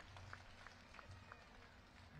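Near silence during a pause in speech: a low steady hum with a few faint scattered ticks.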